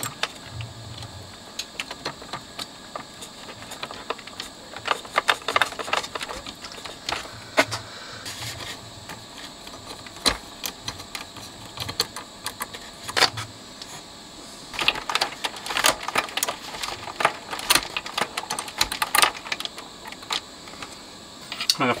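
Small irregular metal clicks and taps of fingers and a screwdriver handling screws and the metal motor bracket inside a cassette deck's chassis, in bunches with pauses between.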